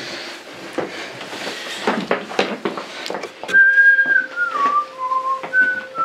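A scuffle of quick knocks and thuds from a bat and stick being swung at people. About three and a half seconds in, a person whistles a short tune of a few held notes that step down and then back up.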